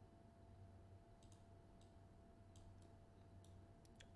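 A handful of faint computer mouse clicks, scattered from about a second in, over a low steady hum; otherwise near silence.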